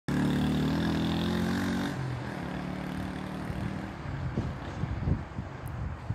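A motor vehicle's engine running steadily, loud for about the first two seconds and then fainter, with a few low thumps in the second half.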